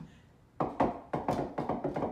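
Small bouncy balls dropped onto a wooden tabletop, bouncing with a rapid, irregular run of taps that starts about half a second in.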